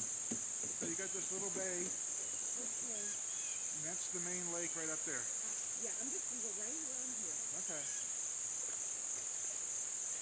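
A steady high-pitched insect chorus buzzes without a break, with faint talking in short stretches about a second, four seconds and seven seconds in.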